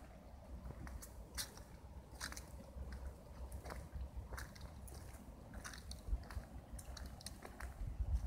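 Footsteps crunching on fallen leaves and grit on a paved path, a short crackle every second or so at an uneven walking pace, over a faint low rumble.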